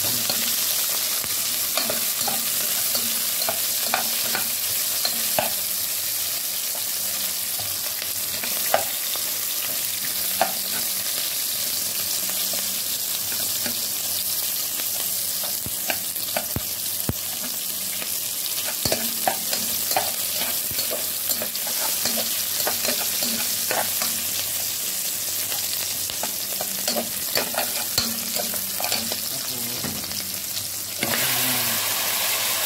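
Onions and garlic sizzling in hot oil in a pot: a steady frying hiss, with scattered clicks and scrapes of a slotted metal spatula stirring against the pot.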